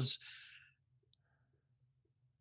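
A man's speech trails off into a pause, with one faint, sharp click about a second in over a faint low hum.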